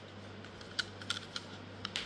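A few faint, light clicks and taps of a hard plastic phone case being handled, over a low steady hum.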